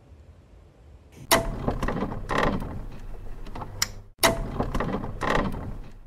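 Sound effect of an animated video outro: after a second of quiet, a sudden noisy effect starts about a second in and lasts about three seconds. It cuts out briefly and then repeats in nearly the same form.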